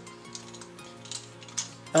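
Soft background music with steady held notes, with a few light metallic clicks as a steel smart-lock cylinder is handled.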